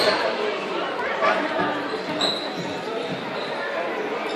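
Crowd of voices talking and calling in a large sports hall, echoing, with a few short thumps.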